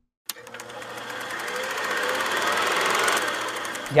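A small machine running with a rapid, even clatter. It starts with a click just after a moment of silence and slowly grows louder.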